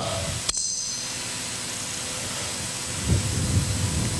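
Steady hiss with no speech. There is a short click about half a second in and a low rumble about three seconds in.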